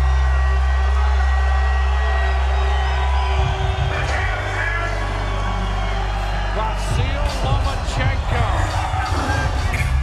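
Ring-walk music played loudly over an arena sound system, built on deep sustained bass notes, with crowd noise underneath. About seven seconds in, a sharp percussive beat comes in.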